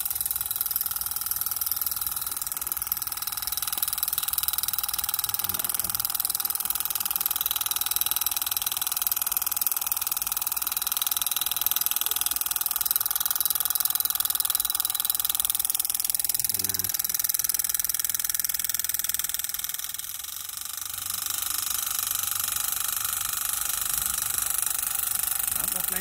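A model belt-driven long-tail water pump on an RC two-wheel tractor running steadily, its motor giving a steady whine over the rush of water pouring from the outlet pipe. The sound dips briefly about three quarters of the way through, then carries on steadily.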